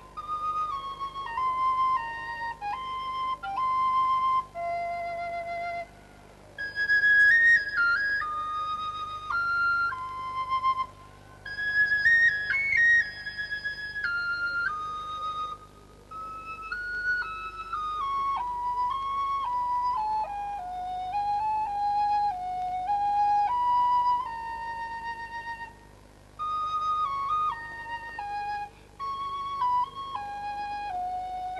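Background music: a solo flute playing a slow melody of held and stepping notes, in phrases with short breaks between them.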